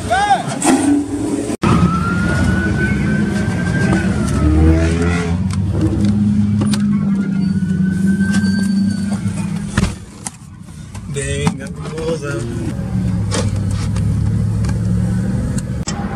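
A Chevrolet Camaro revving as it spins its rear tyres in a smoky donut, cut off abruptly just under two seconds in. After that comes the steady low drone of driving inside a Chevrolet SUV at highway speed.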